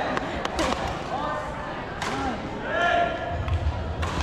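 Badminton play on an indoor court: a few sharp clicks of rackets striking the shuttlecock and shoes squeaking on the court floor, over voices in the hall.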